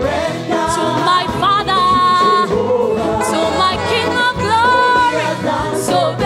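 Live gospel worship song: a woman and two men singing together into microphones, holding long notes with vibrato.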